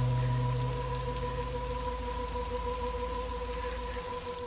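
A held, droning background-music note with steady hiss beneath it, like rain, easing slightly in loudness; a lower part of the drone drops out about halfway through.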